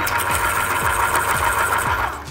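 Pencil sharpener grinding steadily, a mechanical whirr that cuts off at the end.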